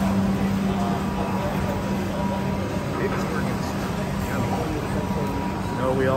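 Hawker-centre ambience: a steady mechanical hum from fans and ventilation under faint background chatter of diners.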